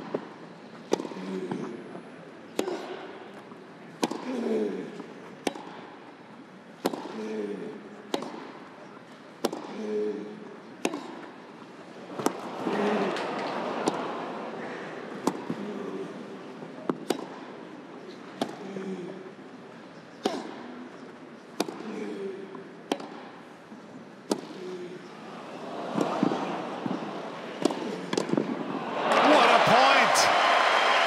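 Tennis rally on a grass court: crisp racket strikes on the ball about once a second, each followed by a short grunt from a player. Crowd applause swells near the end.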